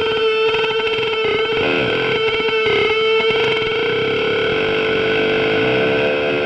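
Punk band playing live: heavily distorted electric guitar through effects holds one loud, wavering tone that steadies from about four seconds in, with scattered hits underneath in the first half.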